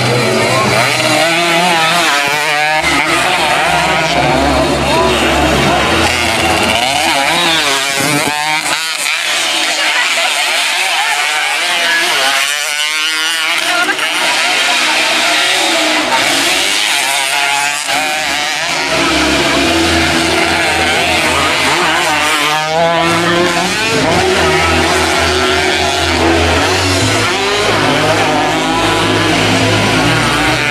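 Underbone racing motorcycles running on a dirt track, their engines revving up and falling off again and again as the bikes ride through a corner and pass by.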